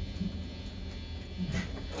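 Low steady hum in a room full of live band gear, with a couple of faint, brief murmurs.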